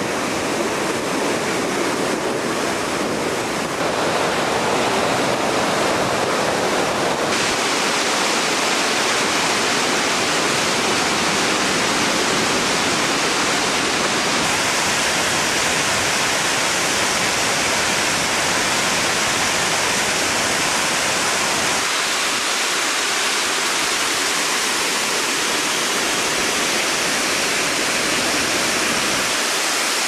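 Water spilling over the gates of a river dam and crashing into churning white water below: a loud, steady rush whose tone shifts slightly a few times.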